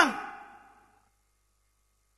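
A man's loud preaching voice trailing off at the end of a shouted word, fading out within about half a second, followed by dead silence.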